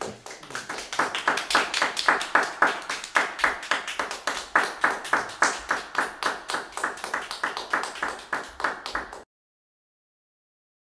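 Hand clapping from a small audience, quick and fairly even at about four to five claps a second, after a harp piece; it cuts off abruptly near the end.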